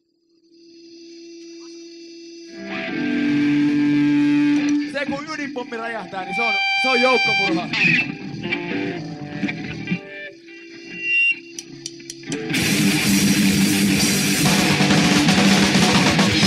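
Opening of a crust/hardcore punk track recorded on cassette. After a moment of near silence, sustained guitar chords with effects come in, with voice-like sounds in the middle. About twelve seconds in, the full band comes in loud with distorted guitar.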